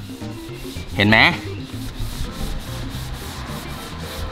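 A terry cloth towel rubbed by hand over vinyl sticker wrap on a car's body panel in repeated wiping strokes, clearing off dried wax residue with a spray cleaner.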